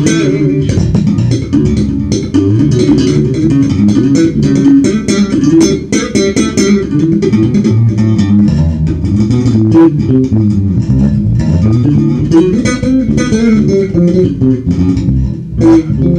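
Five-string electric bass with stainless steel strings, played fingerstyle as a continuous line of notes with crisp, sharp plucked attacks. The strings are about two months and some 20 gigs old, and they still sound bright.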